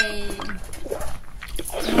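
A woman's voice holding a drawn-out syllable, "may...", as she hesitates over a word; it ends about half a second in and starts again near the end. Soft clicks come in between.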